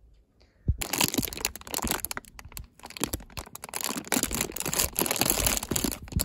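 Crinkly plastic food wrappers being handled and crushed: loud, dense crackling with many sharp clicks that starts about a second in and stops near the end.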